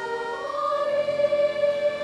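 Children's choir singing long held notes with an accordion ensemble, moving up to a new chord about half a second in.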